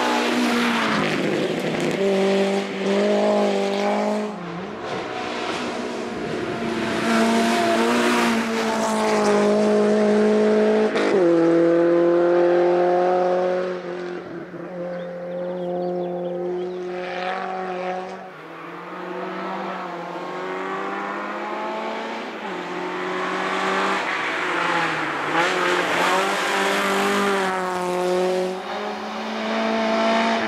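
Lancia Beta Coupe's four-cylinder engine racing hard uphill at high revs, the note holding and then stepping down in pitch several times as it shifts gear.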